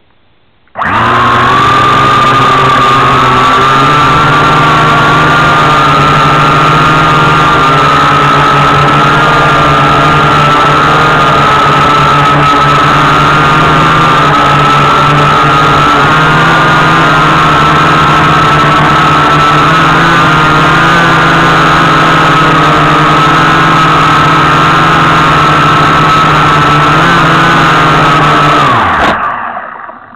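Syma X8W quadcopter's motors and propellers running, recorded at very close range by the drone's own camera: a loud steady whine with a low hum beneath, starting abruptly about a second in. Near the end the whine drops in pitch and the motors wind down.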